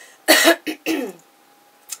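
A woman coughing: two coughs in quick succession within the first second, the first the louder, which she puts down to her allergies.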